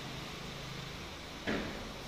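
Steady low room hum with a single short bump about one and a half seconds in.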